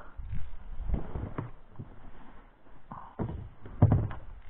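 Irregular knocks and thumps of fishing tackle handled in an inflatable boat while a hooked fish is played, with the heaviest thump near the end as the landing net is taken up.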